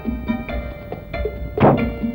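Film background music with sustained notes and a low beat, cut by a single loud thunk about one and a half seconds in, a car door being shut.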